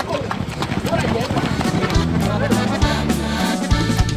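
Racehorses galloping on a dirt track, hoofbeats under people shouting for the white horse. Music comes in about halfway through.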